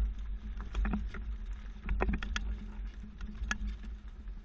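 Bike and Swagman XC2 hitch-mounted platform bike rack rattling with irregular clicks and knocks as the vehicle twists over alternating speed bumps, over a low, steady vehicle rumble.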